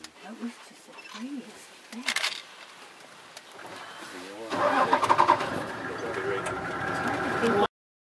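A vehicle engine starts about halfway through and runs steadily, then the sound cuts off suddenly near the end.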